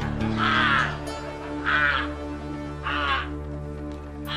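Voices shouting a short, falling "ah!" in unison, one cry about every second and a quarter, four times, over background music.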